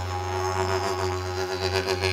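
Instrumental music: a steady low drone on F# with overtones shifting and pulsing above it.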